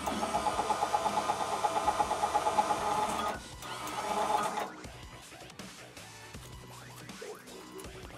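Electric motors of Lippert Ground Control 3.0 front landing-gear jacks running to retract the legs, a geared motor sound with a fast, even pulsing. It stops after about three and a half seconds, then runs again for about a second. The newly replaced jack is working.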